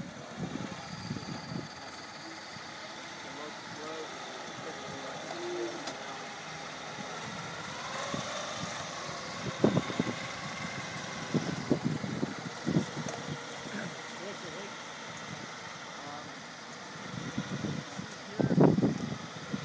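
NASA's battery-electric Space Exploration Vehicle rover driving slowly over grass, its drive running steadily, with a few short louder knocks and voices in the middle of the stretch.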